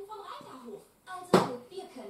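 Quiet voices from a television playing in the room, with a single sharp knock a little past halfway.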